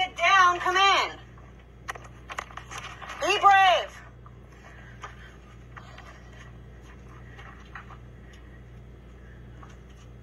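Two short bursts of a voice in the first four seconds, then faint scuffs and clicks of someone moving and climbing through a narrow rock cave passage, over a steady low hum.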